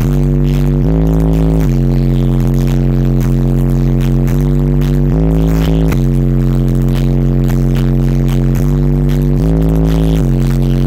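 Bass demo music played very loud through a car audio system of six 18-inch subwoofers, heard inside the vehicle's cabin: sustained low bass notes stepping between a few pitches about every second or so.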